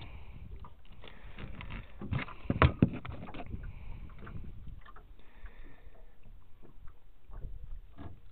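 Handling noises on a carpeted boat deck: scattered knocks and scuffs, with a pair of loud thumps about two and a half seconds in.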